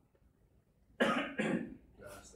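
A person coughs once, a short sudden burst about a second in after near silence.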